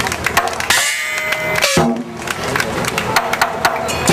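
Chinese lion dance drum and cymbals playing, a run of quick sharp strikes with ringing between them.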